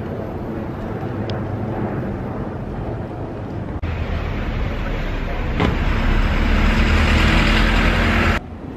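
Street traffic noise: motor vehicles driving past, with a steady low rumble. It grows louder in the second half as a box truck passes close by.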